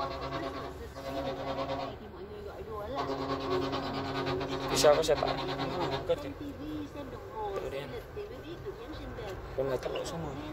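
Singing with long held, wavering notes playing from the car's FM radio through the cabin speakers, with a sharp click about five seconds in.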